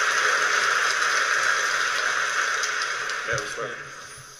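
Large audience applauding, a dense even clatter of many hands that fades away over the last second or so.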